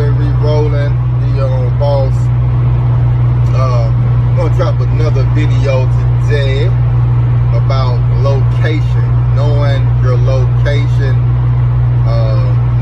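A man talking, over a loud, steady low hum that does not change, inside an empty cargo van.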